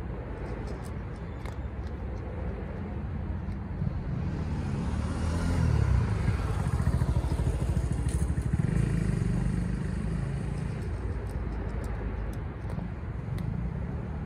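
A motor vehicle passing by, its rumble swelling about four seconds in, loudest around six to nine seconds, then fading away.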